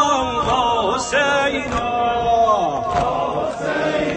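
A male reciter chanting a Shia mourning lament (noha) through a loudspeaker, holding long wavering notes that slide downward, with a few scattered thumps.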